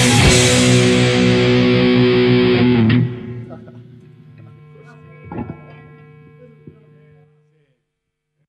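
Rock band with distorted guitar and drums playing the final bars of a song, stopping together about three seconds in. A last guitar chord is left ringing and dies away, with a single soft knock halfway through, and it has faded out shortly before the end.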